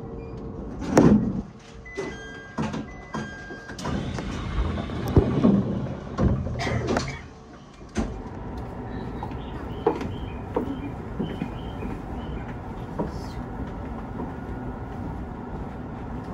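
E127-series electric train standing at a platform with its passenger doors opening: a short repeated two-note chime and the clunk of the sliding doors, mixed with knocks and rustling from handling. After that a steady, quieter background runs on.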